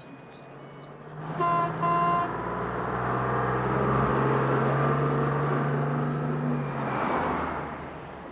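A vehicle horn toots twice in quick succession about a second and a half in. Then a car drives close past with its engine running, fading away near the end.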